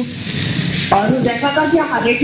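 Food sizzling in a hot pan, a steady hiss that is plainest in the first second; a voice talks over it from about a second in.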